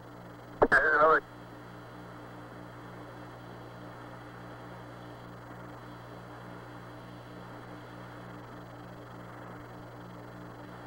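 Open Apollo air-to-ground radio link: steady static hiss with a low, evenly pulsing hum. Less than a second in, a click and a brief, half-second fragment of voice break through.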